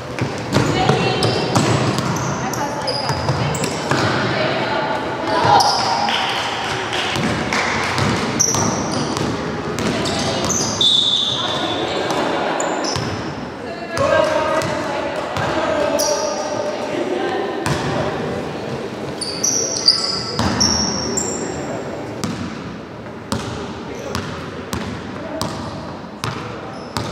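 Basketball game in a large gymnasium: the ball bouncing on the wooden floor again and again, with players' voices calling out across the reverberant hall.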